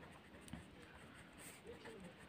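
Faint scratching of a ballpoint pen writing on paper, with one small tick about half a second in.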